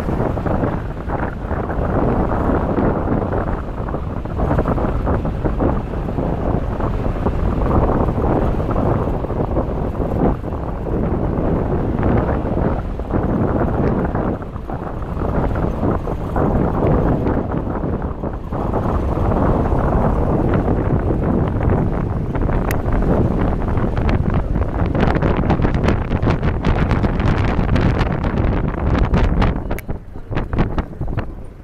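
Wind buffeting the microphone over the running of a safari vehicle on a game drive. Rattling clicks come in during the last few seconds.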